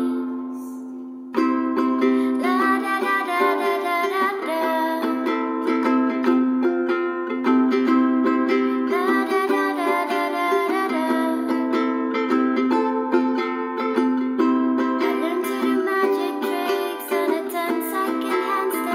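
Ukulele strummed in chords with a woman singing along, at points on wordless "la da da" syllables. It opens on a chord left ringing and fading for about a second and a half before the strumming starts again sharply.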